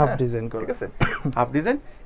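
A man talking, with a short sharp noise about a second in.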